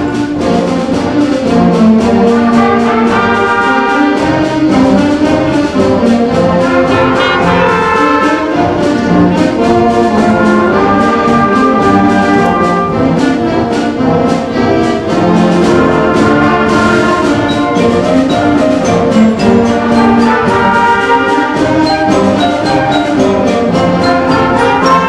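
A middle-school concert band of 7th and 8th graders playing a march live. Brass carries the tune over woodwinds, with a steady percussion beat.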